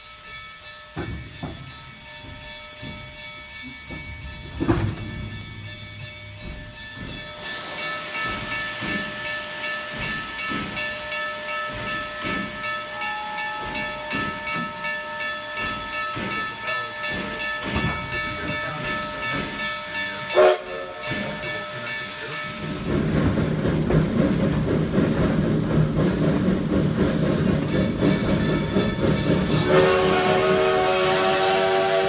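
Black Hills Central No. 110, a 2-6-6-2T Mallet steam locomotive, moving slowly close by with irregular exhaust chuffs and a steady hiss of steam. A single sharp metallic clank comes about two-thirds of the way through. After it the steam and running gear get louder and denser toward the end.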